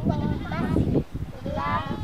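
A group of young children's high voices calling out and chattering, louder in the second half, over low wind rumble.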